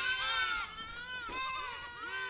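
Goat bleating in high, wavering calls that fade out toward the end.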